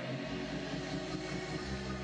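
Church organ holding a steady low chord, with the bass notes swelling near the end.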